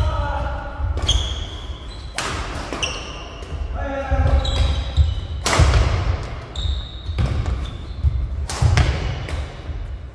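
Badminton rally: rackets sharply striking the shuttlecock several times, the hardest hit about five and a half seconds in, with court shoes squeaking on the floor. The sounds echo in a large sports hall.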